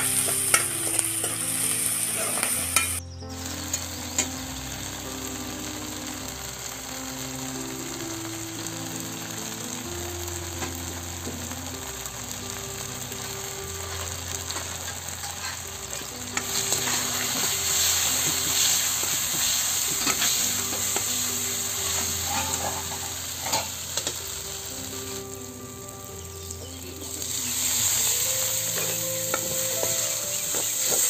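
Chopped onions and spices sizzling in hot oil in a steel kadai while they are stirred and scraped with a spoon. The sizzle grows louder a little past the middle, dips briefly a few seconds before the end, then picks up again.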